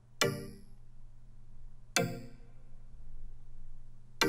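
Synth pluck sounding single notes, two about two seconds apart, each trailing off in a long reverb tail. The tail grows louder as the reverb send level is turned up.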